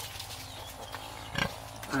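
A pig grunts once, briefly, about one and a half seconds in.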